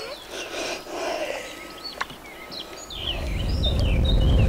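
Birds calling with short, high chirps that fall in pitch. Low music fades in near the end.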